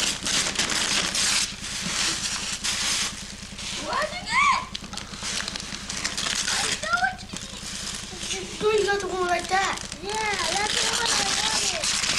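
Wrapping paper being torn and crumpled as a present is unwrapped, in several long noisy rips at the start, about two seconds in and near the end. A child's high voice exclaims in between.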